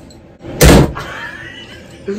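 A single sudden loud bang, like something hard slammed or struck, about half a second in, dying away with a short ringing tail.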